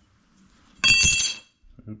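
A thin steel slitting-saw cutter, a disc only thousandths of an inch thick, clattering down, with a sharp clink about a second in and a bright metallic ring that dies away over about half a second, followed by a couple of light knocks.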